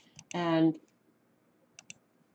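A few quick computer mouse clicks: a pair near the start and another pair near the end, with a spoken word between them.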